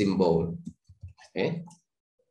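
Computer keyboard keys clicking as a short word is typed, between stretches of a man's speech.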